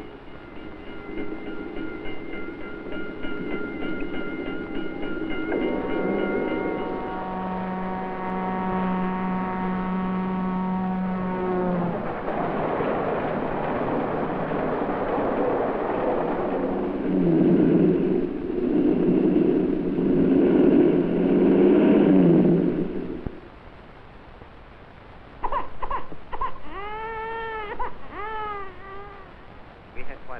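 A montage of everyday sounds from an old film soundtrack. First come steady held tones, then a train rushing past, its whistle dropping in pitch as the noise begins. After a short lull near the end, a baby cries in high rising-and-falling wails.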